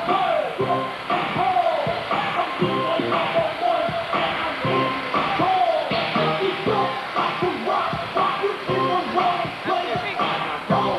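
Music with a steady beat and a pitched melodic line over it, dulled in the highs.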